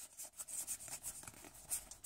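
Faint rustling and light irregular clicks of Pokémon trading cards sliding against one another as a stack is split and fanned out in the hands.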